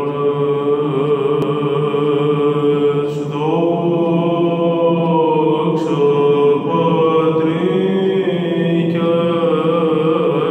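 Solo male cantor chanting a Byzantine Doxastikon hymn unaccompanied, singing long held notes with wavering, ornamented turns. A new phrase begins about three seconds in.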